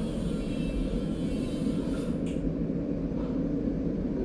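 Steady low background rumble with no distinct events, and a brief hiss about two seconds in.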